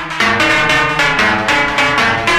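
Electronic dance music from a DJ set: a synth lead pulsing in a quick, even rhythm over a beat. The bass drops out for a moment right at the start, then comes back.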